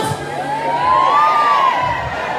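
A crowd of concertgoers shouting and whooping back at the singer, many voices overlapping in rising and falling calls that swell about a second in.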